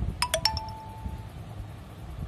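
A short bell-like chime: three quick struck notes close together, the last two ringing on and fading after about a second.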